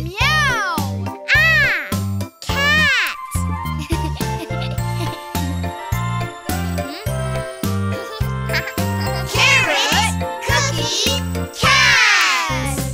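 Bouncy children's-song backing music with a steady bass beat. Over it, three rising-and-falling "Meow!" calls in the first three seconds, a cartoon character imitating a cat. More pitched vocals come in near the end.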